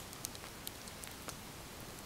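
Wood campfire crackling faintly, a few sparse pops over a low steady hiss.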